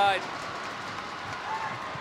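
Steady crowd noise filling an ice hockey arena.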